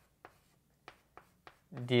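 Writing strokes: about five short, sharp scratches or taps of a pen or marker on a writing surface, spread over the quiet stretch, before a man's voice resumes near the end.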